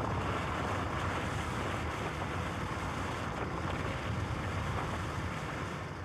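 Steady rushing outdoor noise, wind-like, with a low rumble underneath.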